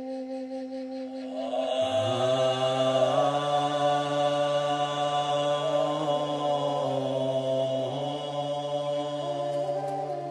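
Chanted Bon Buddhist mantra in long, sustained notes. About two seconds in, a deeper voice joins and the chant grows louder and fuller.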